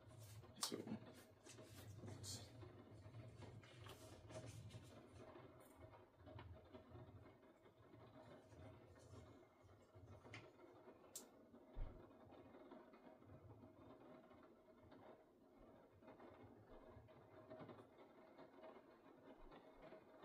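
Near silence: room tone with a few faint clicks and rustles from electronic shooting earmuffs being handled and put on.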